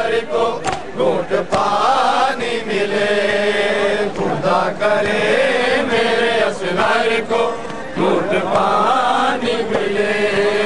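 Male voices chanting an Urdu nauha, a Shia mourning lament, in a long drawn-out melody. Sharp slaps cut through now and then, most likely the mourners' chest-beating (matam).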